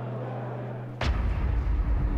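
A steady low hum, then about a second in a sudden sharp hit as the sound switches to loud outdoor ambience with a heavy, uneven low rumble.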